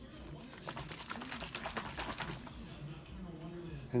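Water and chia seeds sloshing in a plastic sports squeeze bottle shaken by hand: a rapid run of knocks and splashes over the first couple of seconds, then tapering off.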